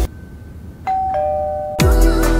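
A two-note doorbell chime: a higher ding, then a lower dong about a quarter second later, both ringing on until music comes back in near the end.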